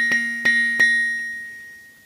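Teenage Engineering OP-1 synthesizer note, retriggered about three times in quick succession in the first second by taps on a TS-2 Tap piezo sensor feeding the Oplab's gate input. Each strike starts the same ringing pitched tone, and the last one rings out and fades away.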